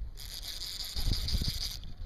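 Fly reel drag buzzing steadily for about a second and a half as a hooked snook runs and pulls line off the reel.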